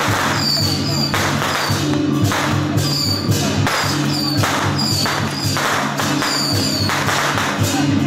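Music with a steady beat accompanying a Chinese dragon dance: percussion with crashes about once a second over steady low tones.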